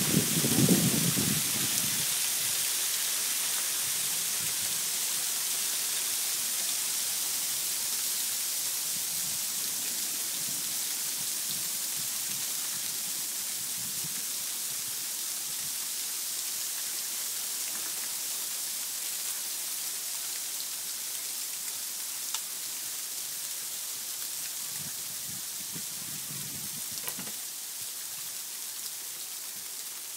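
Freezing rain, mixed with pea-sized hail, pouring down in a steady hiss that eases slowly over the half minute. A few sharp ticks of ice pellets striking nearby stand out. Brief low rumbles come at the start and near the end.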